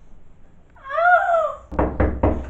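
One high, drawn-out meow-like call, rising and then falling in pitch, lasting about a second. A short, loud burst of noise follows near the end.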